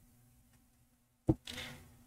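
Near silence with a faint steady hum, broken about a second and a quarter in by a short click and then a brief hiss like an intake of breath.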